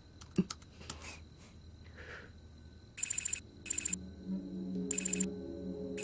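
An electronic ringing trill in four short bursts, starting about halfway in, over a low sustained drone that comes in during the second half; a few faint clicks before it.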